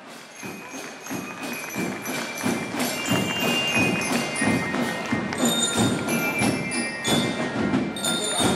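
Colombian Army military marching band (banda de guerra) playing a Christmas carol (villancico) as it marches. Drum strokes sound under high, ringing bell-like notes, and the band grows louder over the first second or so.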